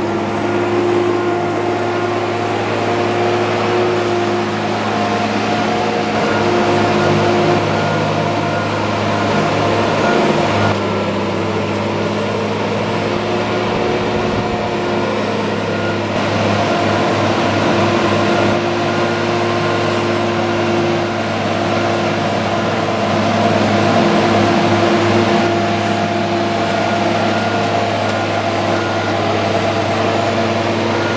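Engine of a mobile boat hoist (travel lift) running steadily as the lift drives across the yard carrying a sailboat in its slings.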